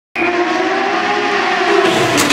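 Rally car engine running hard at high revs, cutting in abruptly just after the start, its pitch holding steady and sinking slightly.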